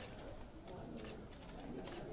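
Low murmur of indistinct voices in a room, with several short, sharp clicks spaced a fraction of a second apart.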